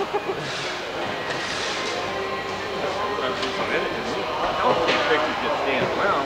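Indistinct voices over a steady mechanical rumble and hum in a large warehouse.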